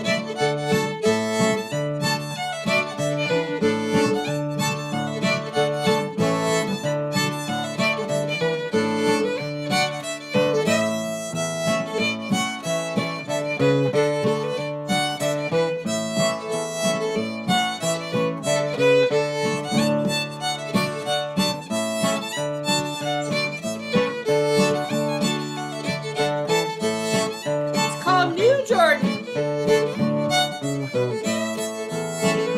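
Old-time fiddle tune played on fiddle with strummed acoustic guitar backing, at an unhurried, steady pace.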